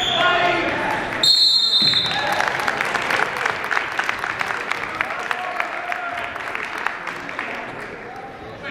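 Spectators shout as a wrestler is pinned. About a second in, a referee's whistle gives one short blast, signalling the fall, and clapping and cheering follow and slowly die down.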